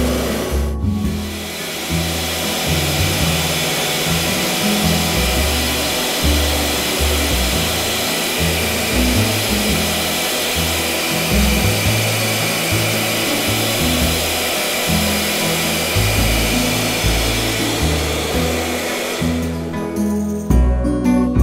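Small motor of a battery-powered handheld vacuum cleaner running steadily with a high, even whoosh of air, sucking up bits of paper confetti; it stops just before the end.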